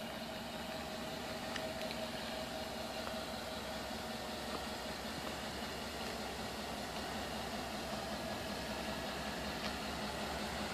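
Chevrolet Tahoe's V8 engine idling steadily.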